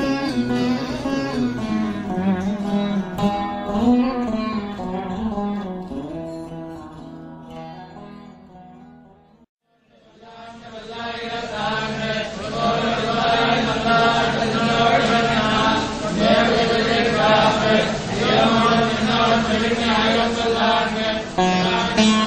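Carnatic veena music: a plucked melody with sliding notes fades out about halfway through, a moment of silence follows, then another fuller veena piece fades in.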